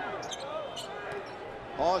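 Basketball game audio: a steady arena crowd noise with a ball bouncing on the court, and a commentator's voice coming in near the end.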